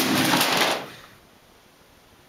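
A model built of cardboard and plastic boxes knocked over, the boxes clattering and tumbling on a hard floor; the noise stops under a second in, leaving the quiet of a small room.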